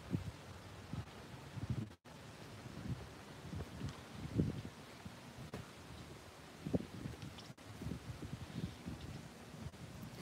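Wind buffeting and handling noise on a hand-held phone's microphone while walking: a faint, irregular run of soft low thumps and rustles.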